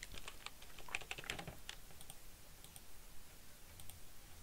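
Computer keyboard keystrokes: a few faint, scattered key taps, bunched in the first second and a half and sparse after that, as characters are deleted from a line of code.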